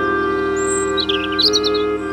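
Slow ambient music with long held chords, and high bird chirps over it for about a second in the middle.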